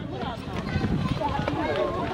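Several children's voices chattering over one another, with the scuffing of many footsteps as a group of children walks down stairs.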